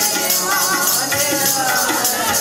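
Sikh kirtan: harmoniums playing a sustained melody with tabla keeping an even rhythm, and singing voices weaving over them.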